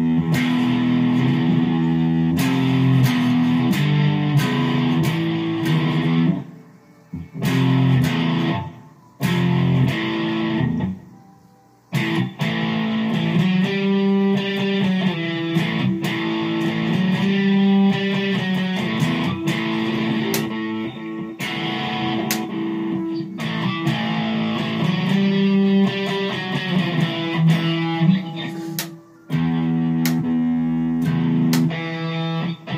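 Electric guitar playing low riffs that stop short several times: briefly about six and nine seconds in, for about a second near twelve seconds, and once more near the end.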